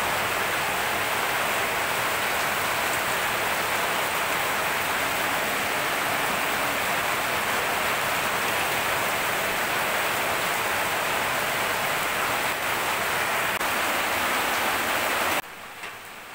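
Boroi (jujube) pickle sizzling steadily in hot oil in an iron kadai as oil is poured over it; the sizzle cuts off suddenly near the end.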